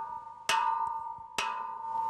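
Metal rod striking a rusty steel pipe used as an alarm signal: two sharp clangs less than a second apart, each leaving a long, steady metallic ring that carries on between strikes.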